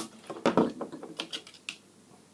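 A sharp click, then a few scattered light clicks and taps as pieces of thin wire and side-cutting pliers are handled and set down on a tabletop.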